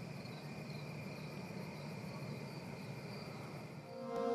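Faint night ambience of crickets chirping steadily in repeating pulses, over a low steady hum.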